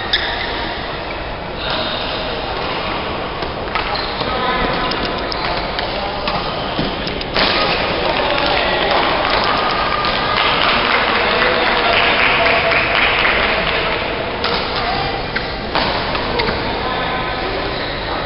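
Chatter of many voices in a large, echoing badminton hall, louder through the middle stretch, with a few faint sharp clicks of racket-on-shuttlecock hits.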